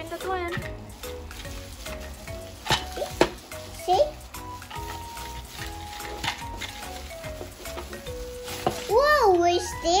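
Plastic bubble-wrap packaging crinkling and crackling as it is pulled off and handled, in short uneven crackles, over background music. A child's voice comes in near the end.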